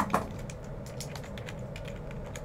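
Typing on a computer keyboard: light, irregular key clicks over a low steady room hum.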